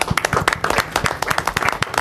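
Several people applauding in a room, many quick, overlapping hand claps.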